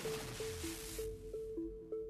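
Electronic intro music: a hissing whoosh that dies away about a second in, over a simple synth riff alternating between two notes about three times a second, with a low bass rumble beneath.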